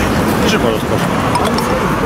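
Several people talking over the steady low rumble of road traffic and vehicle engines.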